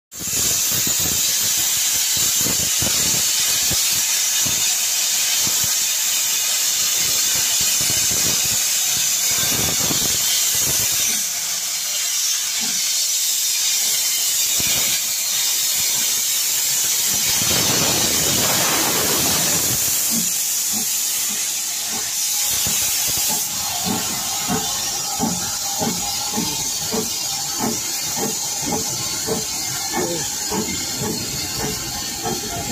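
Steam tank locomotive Austin No. 1 hissing loudly and steadily with steam escaping, then starting to chuff in a regular beat of about one and a half exhausts a second from about two-thirds of the way in as it gets under way.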